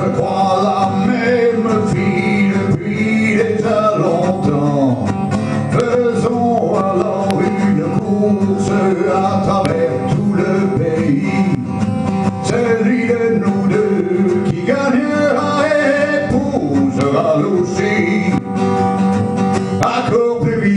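Steel-string acoustic guitar strummed steadily as accompaniment to a country-style song, with a man singing over it.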